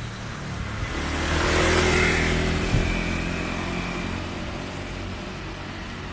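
A car passes close by on the street: its engine and tyre noise swell to a peak about two seconds in, then fade away.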